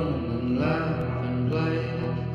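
A man singing long, held notes without clear words over a hollow-body electric guitar holding a chord.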